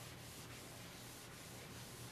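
Felt chalkboard eraser wiping chalk off a blackboard: a faint, steady rubbing hiss made of repeated back-and-forth strokes, a few each second.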